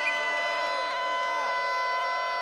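Basketball arena sound during live play: a chord of several steady tones held throughout, over faint crowd noise, with a few short squeaks from the court.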